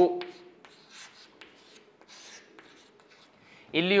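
Chalk writing on a chalkboard: a series of short, faint scratching strokes as a word is written.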